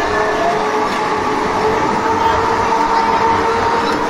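Break Dance fairground ride running, its spinning platform and gondolas making a steady mechanical rumble with an even, high whine over it, and no ride music playing.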